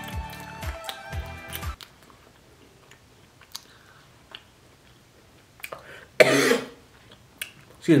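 Backing music with a beat that cuts off after about two seconds. Then quiet chewing of crunchy butter cookies with faint small clicks, and near the end a loud, short burst from a person's throat that is followed by "excuse me".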